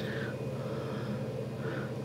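A quiet, steady low hum of room tone with no distinct events.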